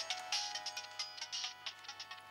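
Mobile phone ringing with a musical ringtone: a quick tune of short, changing notes over a beat.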